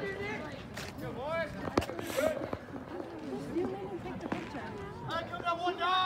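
Spectators and players talking and calling out at a baseball game, with a single sharp click a little under two seconds in.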